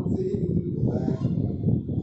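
Speech only: a man talking, lecturing.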